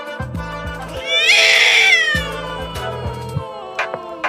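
A cat meows once, a long call starting about a second in, over background music.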